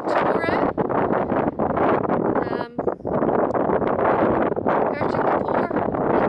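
Strong wind buffeting the camera microphone: a loud, continuous rushing noise with no let-up, broken only by a couple of brief snatches of a woman's voice.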